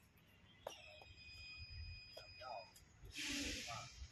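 Faint, indistinct talking at low level, with a short hiss about three seconds in.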